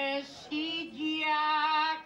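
A bertsolari singing an improvised Basque verse (bertso) solo and unaccompanied, in a high register, holding long notes. There is a short break for breath about half a second in, and the singing stops abruptly right at the end.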